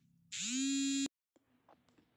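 A smartphone's vibration motor buzzing for an incoming call. It spins up with a short rising pitch, buzzes steadily for under a second, then cuts off suddenly as the call is dismissed.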